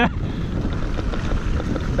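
Wind buffeting the microphone of a helmet camera on a mountain bike rolling fast down a grassy slope, a steady low rush with tyre rumble and light scattered rattles from the bike.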